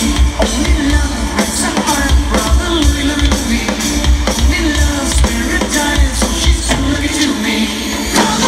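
Live band playing an 80s Euro-disco song, with a steady drum-kit beat under bass and electric guitar, heard from among the audience.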